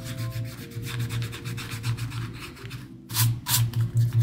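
Eraser rubbing out a pencil sketch on sketchbook paper in quick back-and-forth scrubbing strokes, harder strokes about three seconds in.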